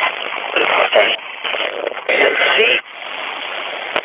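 A radio receiver sweeping rapidly across stations: static hiss chopped with brief fragments of broadcast voices, changing abruptly every fraction of a second. About three seconds in it settles to a quieter, steadier hiss.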